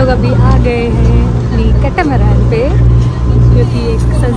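A woman talking, over a loud, pulsing low rumble of wind on the microphone.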